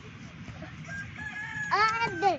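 A rooster crowing: one long, faint, held call, followed near the end by a louder, shorter cry that falls in pitch.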